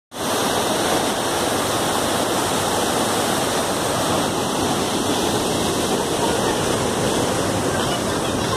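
Muddy floodwater pouring through the steel sluice gates of a check dam: a loud, steady rush of water.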